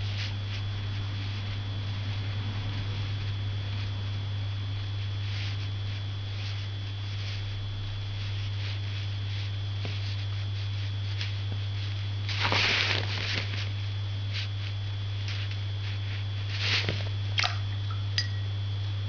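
Faint soft strokes and scratches of a Chinese ink brush on paper while a branch is painted, over a steady low hum. A brief louder rustle comes about twelve seconds in, and another with a couple of sharp clicks near the end.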